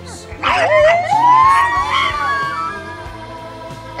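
A long howling cry that rises in pitch for about a second and then holds before fading, over background music.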